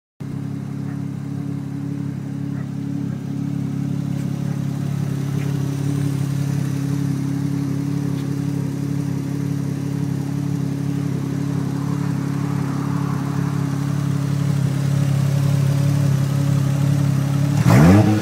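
Toyota 1JZ-GTE 2.5-litre twin-turbo straight-six idling steadily, then revved sharply right at the end.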